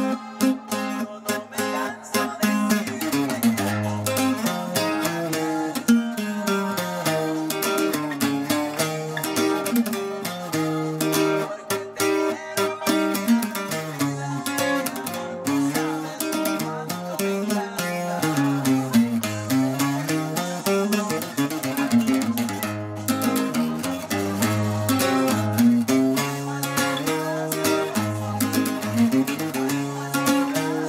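Bajo sexto played with a pick: strummed chords broken up by running bass-note lines, the pasaje (lead run) of a norteño song, played steadily throughout.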